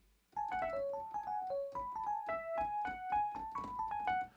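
Rhodes electric piano patch played live from a MIDI keyboard: a quick run of single notes, about five a second. Snap Live Input forces every note into the chosen scale.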